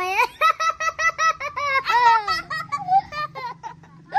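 A young child laughing: a quick run of high-pitched ha-ha syllables, about eight a second, tailing off after about two seconds.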